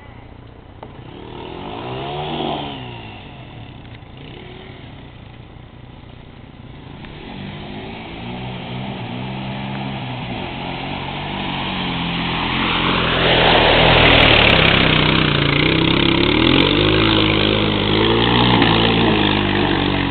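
ATV engine revving as it drives through a mud hole, its pitch rising and falling with the throttle. There is a short rev about two seconds in, then the engine grows steadily louder as it comes closer. It is loudest past the middle, where a rushing noise joins it.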